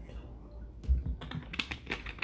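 A thin plastic water bottle being handled after a drink: a low bump about a second in, then a quick run of small clicks and crackles.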